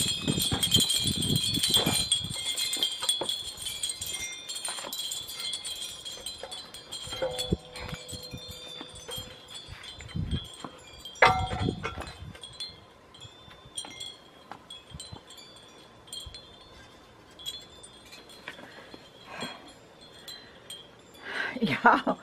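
Hanging wind chimes ringing, loudest in the first few seconds and then fading, with scattered light clinks and a sharper knock about eleven seconds in.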